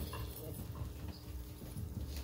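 Quiet room tone with a low steady hum and a few faint scattered knocks, between sentences of a reading over a PA system.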